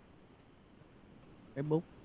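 Faint, steady background hiss and hum with no distinct events, then a man's voice speaks a word near the end.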